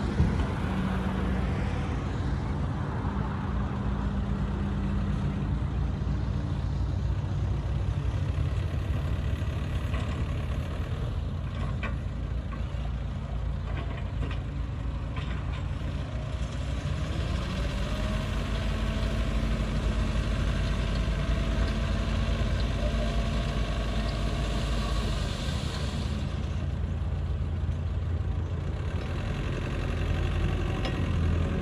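Small bulldozer's diesel engine running steadily under load as it pushes soil, its note rising a little about halfway through. A single sharp knock at the very start.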